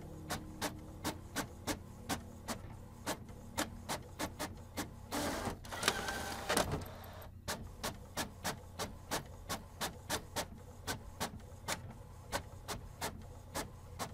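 Printer running: sharp clicks in an even rhythm of about three a second over a low steady hum, with a louder rushing whir of about two seconds in the middle.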